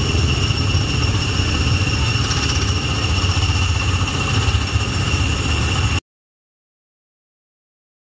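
Small gasoline engine of an amusement-ride car idling, heard from the driver's seat as a steady low rumble with a faint high whine. The sound cuts off abruptly about six seconds in.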